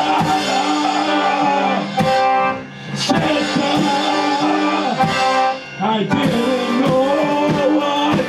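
Live piano accordion and drum kit playing together: the accordion holds steady chords over the drums and cymbals. The music drops out briefly twice, a little after two seconds and again before six seconds, and comes back in on a drum and cymbal hit.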